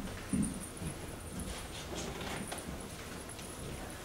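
Faint footsteps and small knocks of a person moving about a stage, with a couple of low thumps about the first half-second, over quiet room noise.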